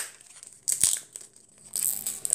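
Packaging crinkling and tearing by hand as an order is unwrapped, in short bursts about a second in and again near the end.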